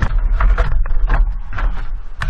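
Handling noise from a camera being picked up and moved: a quick run of knocks and rubbing against the body of the camera, over a heavy low rumble on the microphone.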